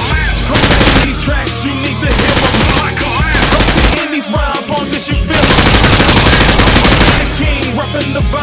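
Four bursts of rapid automatic gunfire sound effects laid over hip hop music; the last burst, past the middle, is the longest at about two seconds.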